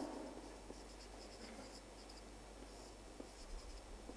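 Felt-tip marker writing on paper, faint scratchy strokes with a few small ticks near the end.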